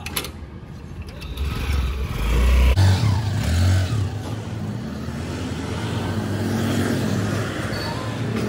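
Honda Activa 125 scooter's small single-cylinder four-stroke engine pulling away and riding off along the street. A heavy low rumble is loudest a couple of seconds in as it moves off.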